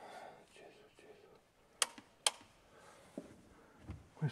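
Two sharp clicks about half a second apart, with a faint mumbled voice at the start and a soft thud near the end.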